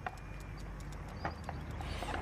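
Outdoor garden ambience with birds, over a steady low hum, and scattered light clicks as a bicycle is pushed along a path.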